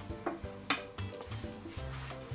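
Quiet background music with a few light clicks and scrapes of a spoon working in a plastic bowl of cotton balls.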